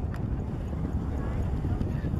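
Wind buffeting the camera microphone as a steady, uneven low rumble, with faint voices of people nearby.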